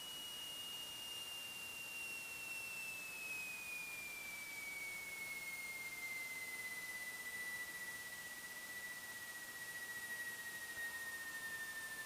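A faint, thin, high whine on the cockpit intercom audio, sliding slowly and steadily down in pitch, over a quiet hiss, during the landing rollout of a light aircraft.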